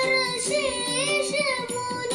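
A recorded song: a high voice sings a wavering, ornamented melody over sustained instrumental accompaniment.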